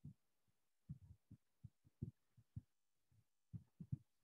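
Faint, irregular low knocks of a marker pen writing on a whiteboard, a dozen or so short taps in the space of a few seconds.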